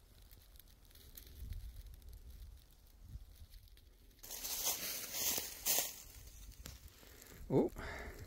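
Footsteps crunching and rustling through dry leaf litter, starting suddenly about four seconds in after a quiet stretch.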